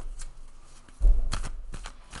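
Tarot cards being shuffled and handled: a few sharp flicks and clicks, with a dull bump against the table about a second in.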